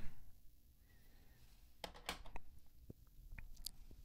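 Faint clicks and light taps of hard plastic graded-card slabs being handled and swapped, a few around two seconds in and a small cluster near the end.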